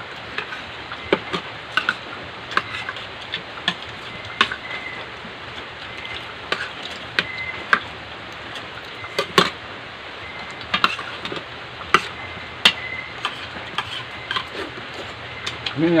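Spoons and forks clinking and scraping against plates and bowls during a meal. The clinks are sharp and irregular over a steady background hiss, with the loudest ones about nine and twelve seconds in.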